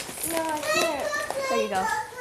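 Children's voices talking, high-pitched, with no other sound standing out.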